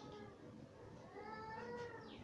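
A high-pitched drawn-out call, about a second long, that rises and then levels off, over faint scratching of chalk writing on a blackboard.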